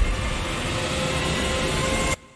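Trailer sound design under a title card: a dense, steady rumbling drone with a few faint held tones above it.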